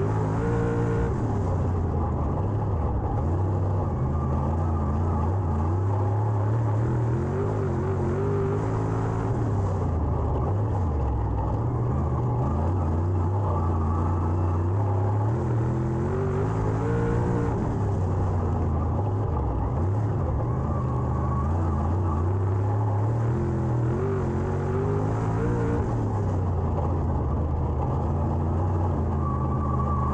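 Dirt late model race car's V8 engine heard from inside the cockpit while lapping a dirt oval. Its pitch rises and falls in a repeating cycle about every eight to nine seconds as it goes round the laps.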